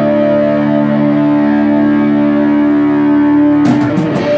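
Live rock band's electric guitars holding one sustained, distorted chord. Near the end the full band comes back in with a crash of drums and cymbals.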